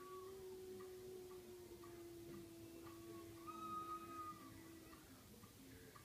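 A long, steady animal cry held on one low pitch, stopping about five seconds in, with a brief higher note over it near the middle. A soft, even ticking runs beneath it, about two ticks a second.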